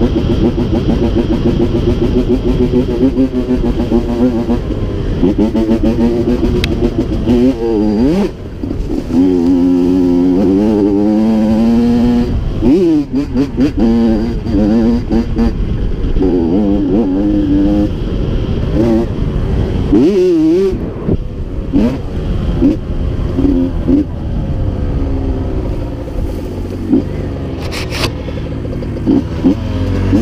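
Honda CR85 two-stroke dirt bike engine under way, its pitch rising and falling repeatedly as the throttle is worked along the trail.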